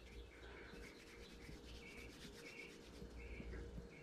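Very faint rubbing of fingers working a bead of air-dry modeling clay and pressing it against a foam form, with a low steady hum under it.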